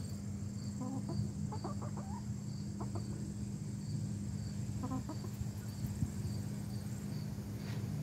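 Easter Egger hens giving a few soft, short clucks while dust bathing, over a steady low hum. A cricket chirps evenly in the background.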